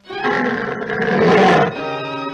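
A sudden loud blast from the cartoon's orchestral score, dense brass and strings that swell for about a second and a half and then fall back to a held chord.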